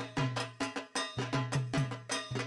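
Rhythmic percussion: drum strokes with a deep tone, each paired with a bright metallic clang, at about four strokes a second.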